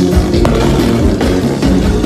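Live band playing loud, steady dance music: drums and bass keeping a regular beat under electric guitar and accordion.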